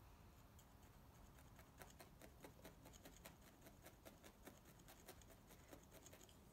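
Faint, rapid ticking of a felting needle stabbing wool roving into a foam felting pad, several pokes a second.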